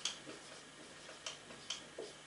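Marker pen writing on a whiteboard: a few short, sharp strokes and taps, spaced unevenly about half a second to a second apart.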